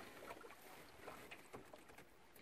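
Near silence: faint outdoor background with a few faint ticks.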